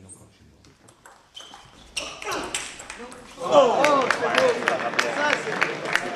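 Table tennis ball clicking off bats and table in a rally, a few sparse ticks over a quiet hall. Then loud voices shouting, loudest from about three and a half seconds in, with sharp clicks among them.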